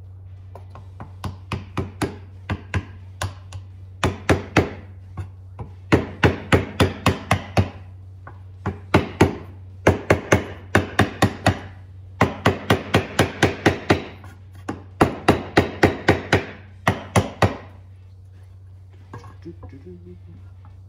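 A small ball-peen hammer taps the rear crankshaft seal into an LS engine's rear cover: quick runs of light taps, about three to five a second, with short pauses between runs, worked all the way around to seat the seal evenly. The taps stop a couple of seconds before the end.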